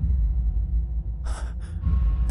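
A man's sharp gasp a little past a second in, followed by a shorter breath, over a steady deep background drone.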